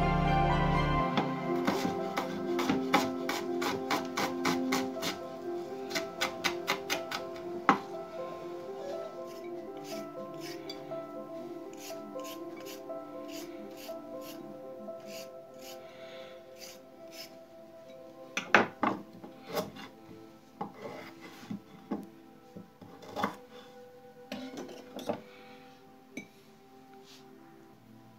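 Knife slicing onion on a wooden cutting board: a quick run of regular taps over the first several seconds. Later comes a handful of sharper clicks as a knife cuts carrot into sticks against a ceramic plate. Soft background music plays throughout and fades toward the end.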